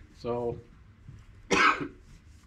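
A man coughs once, a short burst about one and a half seconds in.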